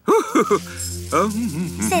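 A rattling shake over light background music with steady held tones, with brief bits of voice at the start and near the end.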